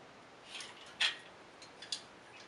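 An AK-74 bayonet and its Bakelite scabbard being handled and unclipped from their wire-cutter setup: a soft rustle, one sharp click about a second in, then a few faint clicks.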